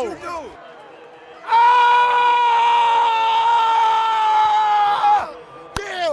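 A man's single long, high yell, held about three and a half seconds with its pitch slowly sinking: a celebration shout after a game-winning shot.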